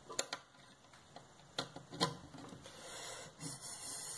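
Faint handling of an inverter air-conditioner circuit board while a wire connector is pushed onto its terminal: a few small clicks near the start and again around the middle, then soft rubbing of hands and cables.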